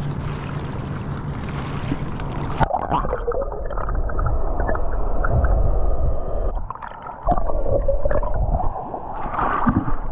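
Lake water around an open-water freestyle swimmer, heard first above the surface. About three seconds in, the camera goes under, and the sound turns muffled and gurgling, with a brief quieter spell about seven seconds in.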